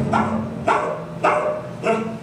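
A dog barking repeatedly, about two barks a second.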